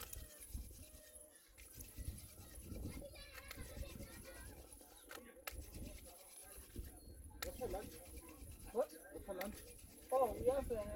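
Soft scraping of a wooden hand drill being spun between the palms on a fireboard of cedar and sandpaper-tree wood to make fire by friction, under wind on the microphone and faint murmured voices, with brief wavering calls near the end.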